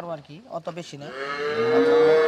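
Holstein-Friesian dairy cow mooing: the tail of one moo at the start, then a long, steady moo that begins a little over a second in.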